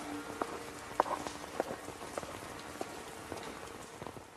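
Steady rain falling, with scattered sharp drips and taps.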